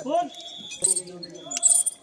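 Metal climbing hardware, carabiners and gear on harnesses, jangling and clinking as people handle rescue ropes, with sharper clinks about a second in and near the end. Voices talk over it.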